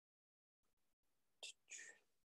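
Near silence on a video-call microphone, broken near the end by two short, soft breathy sounds from a person close to the mic, a breath or a whisper.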